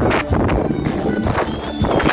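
Live forró band playing loud over a PA system, accordion with bass and drums keeping a steady beat.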